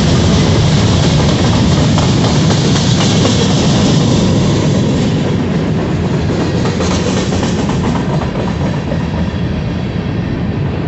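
Freight train of covered hopper cars passing close by: steady noise of steel wheels running on the rails, easing a little about halfway through.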